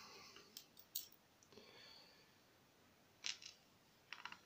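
A few light clicks of small lock pins and springs being handled with tweezers and set down on a pin tray while a lock cylinder is disassembled, the loudest about a second in and again near the end, over near silence.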